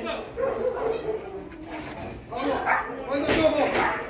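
A dog barking and whining, with people's voices.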